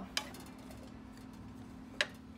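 A wooden spatula knocks against a skillet of vegetables being stirred, once just after the start and again at the end, over a faint steady hum.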